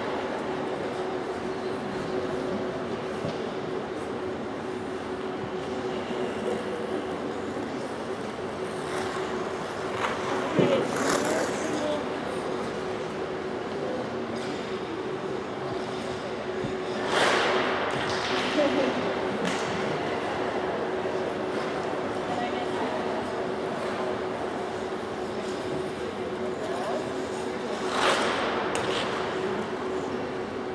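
Ambience of a large indoor ice arena: a steady hum and faint, indistinct voices, with a few brief louder noises about ten, seventeen and twenty-eight seconds in.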